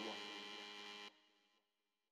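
Faint steady electrical hum and room noise that cuts off suddenly to silence about a second in.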